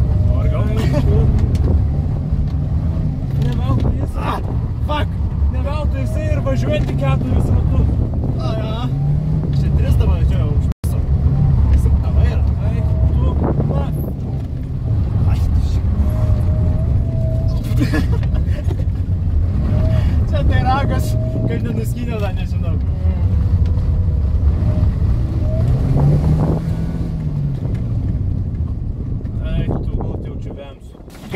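Toyota Starlet's engine revving up and falling back again and again as the car is driven hard through a slalom, heard from inside the cabin, with voices over it.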